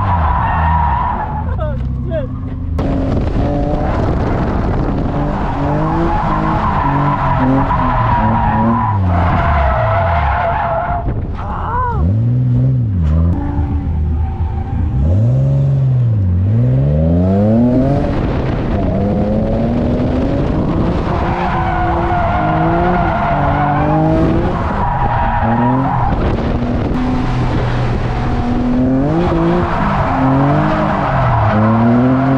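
Nissan VQ V6 engine in a 240SX drift car revving up and falling back over and over, with the rear tyres squealing in long stretches as the car slides sideways through the turns.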